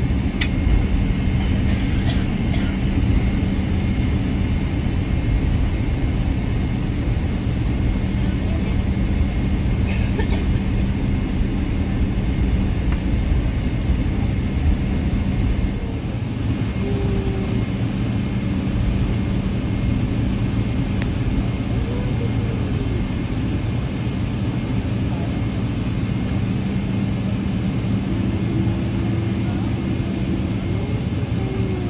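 Boeing 777-300ER cabin noise while taxiing, with the GE90 turbofan engines running at low power: a steady low rumble with a steady hum. The level drops slightly about halfway through.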